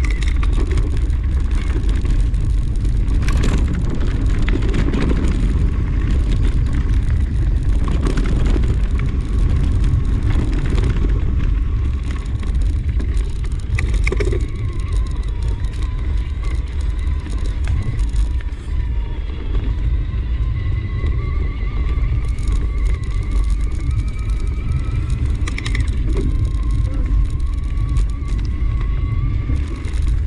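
Mountain bike descending a dirt forest trail fast: steady wind rumble on the microphone over tyres rolling and rattling across dirt and stones, with a few knocks from bumps. A faint thin whine drifts slightly upward in the second half.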